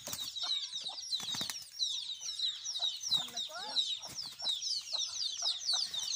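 Chickens fighting: continuous high-pitched peeping and squawking with clucks, and a few sharp wing-flapping thumps in the first second or so.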